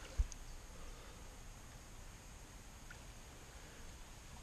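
Faint steady outdoor background noise, with a single brief low thump about a quarter of a second in.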